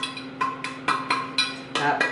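Metal bundt pan being shaken and tapped to spread a flour dusting over its greased inside: a run of light knocks, about three or four a second, some with a brief ring.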